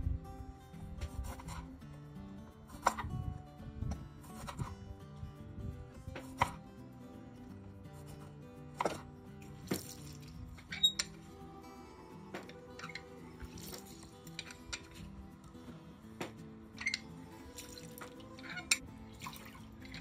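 Background music with a steady beat, over irregular sharp knocks of a knife cutting through limes onto a wooden cutting board. A hand-held metal lime squeezer presses the halves, with juice dripping into a glass measuring cup.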